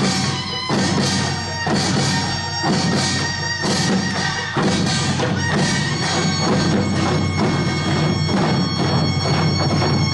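Korean traditional music for the Jindo drum dance: a reedy wind melody held over steady strokes on buk barrel drums struck with sticks.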